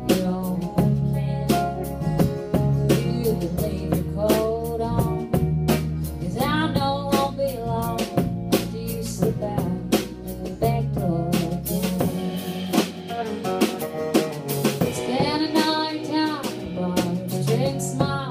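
Live country-rock band playing an instrumental break: an electric guitar lead with bent notes over acoustic guitar, bass and a drum kit. The bass drops out a little past the middle and comes back near the end.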